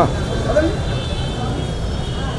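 Faint, indistinct voices of people gathered around, over a steady low rumble of background noise.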